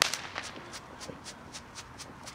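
Consumer firework going off: a sharp bang, then a run of short sharp crackles, about five a second.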